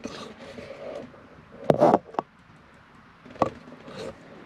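Handling noise from a phone camera working among plastic hoses and fittings: a short rubbing scrape just before two seconds in, then a sharp click, and another brief click about three and a half seconds in.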